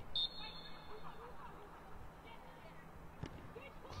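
A short, high referee's whistle sounding just after the start and quickly fading, over faint distant players' voices and open-air pitch ambience.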